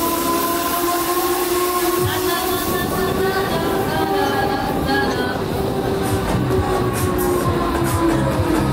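Huss Break Dance fairground ride in operation: a loud, steady held chord of two tones that drifts slightly in pitch, with rapid ticking coming in about six seconds in.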